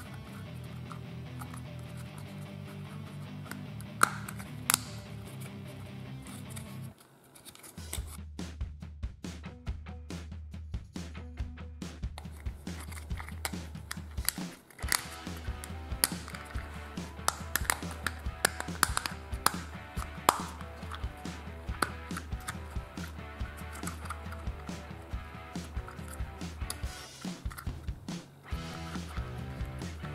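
Background music with a steady bass line, over small plastic clicks and snaps from a transforming egg-shaped dinosaur toy being unfolded by hand. The two loudest clicks come about four seconds in.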